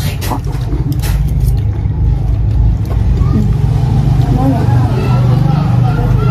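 Talking voices over a loud, steady low rumble, with a few sharp clicks in the first second and a half.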